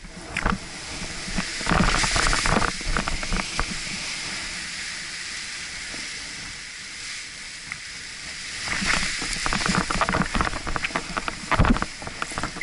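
Wind rushing on the action camera's microphone. It comes with two spells of crackling rustle from the nylon fabric and lines of an Edel Power Atlas paraglider wing as it is handled: one about two seconds in, and one from about nine seconds on as the wing is pulled up off the grass.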